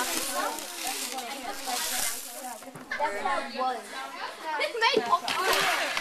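Indistinct voices, with a dry, grainy rustle of rice and corn kernels shifting in a plastic sieve basket near the start and again about two seconds in.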